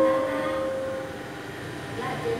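A piano chord on a digital piano held and fading out over about the first second, followed by low room noise.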